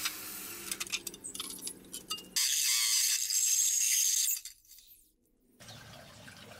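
Light clicks and small knocks from handling a freshly cut white plastic board on a concrete floor, followed by about two seconds of loud rushing hiss that stops abruptly.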